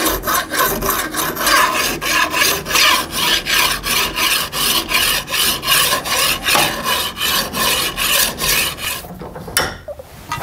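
A steel hand file rasping back and forth along the rails of a steel chainsaw guide bar, about two even strokes a second, dressing the rails to take off burrs and mushrooming. The strokes stop shortly before the end, followed by a single sharp knock.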